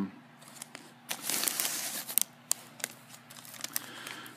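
Crinkling and rustling of the foil pouch and paper wrapper around a freeze-dried ice cream bar as it is handled, with a burst of rustling about a second in and a few sharp crackles near the middle.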